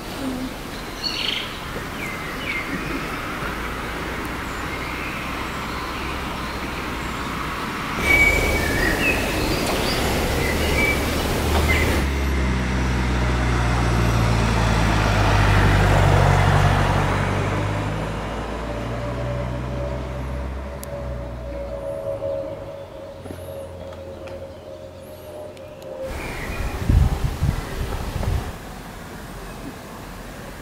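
Outdoor ambience with birds chirping, then a motor vehicle passing, its engine growing louder and then fading away. A few sharp knocks near the end.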